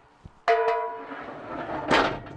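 Pullout tray holding two steel propane tanks being pushed back into its compartment: a metallic clank about half a second in that rings on briefly, a sliding rumble, and a loud knock as the tray seats near the end.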